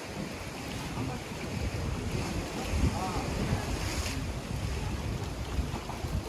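Wind buffeting the microphone over the wash of sea waves against the rocks, a steady rumbling hiss.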